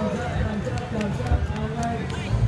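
Indistinct voices of people talking in the background, with a few light clicks.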